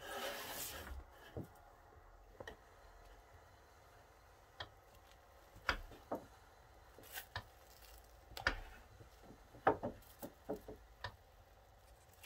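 Damp felt being handled and pulled down over a wooden hat block: rubbing and soft squishing with scattered light knocks against the wood. A brief hiss in the first second.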